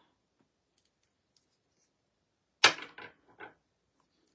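A sharp plastic click, then three fainter ticks within the next second, as a small nail-art paint bottle and its cap are handled while switching from black to white paint.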